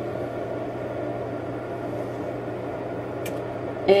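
Steady machine hum with an even hiss, the constant background noise of the room, with one faint click about three seconds in.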